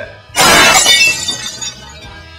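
A sudden loud crash about a third of a second in, with a bright, tinkling tail that dies away over about a second.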